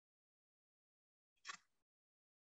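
Near silence, broken by one short clatter of kitchenware about one and a half seconds in.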